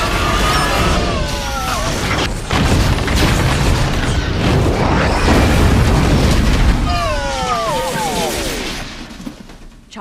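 Sci-fi sound effects of control-room consoles overloading: crackling electrical discharge building into a heavy explosion, with falling whines near the start and again near the end.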